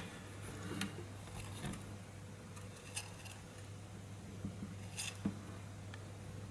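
Faint, scattered small clicks and rustles of a dwarf hamster stirring on the wooden floor of its house and the wood-shavings bedding, a handful of them spread across a few seconds, over a steady low hum.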